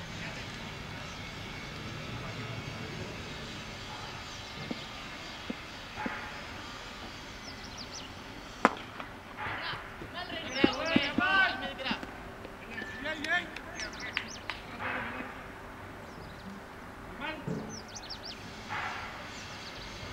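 A single sharp crack of a cricket bat hitting the ball a little under nine seconds in, followed by players' shouts and calls over the next few seconds as the batsmen run.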